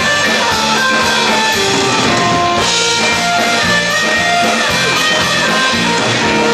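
Live band playing a Ukrainian folk song on electric guitars, keyboard and drum kit, with a melody line of held notes on top.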